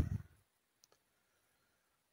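The end of a man's spoken word, then near silence broken by a single faint click about a second in.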